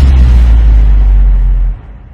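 A loud, deep sustained bass note with a fading hiss above it, the closing hit of an electronic dance music track. It drops away sharply near the end.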